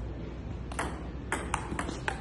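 Table tennis ball clicking off a paddle and the table top as a point is served: about four sharp, quick pocks starting around the middle of the two seconds.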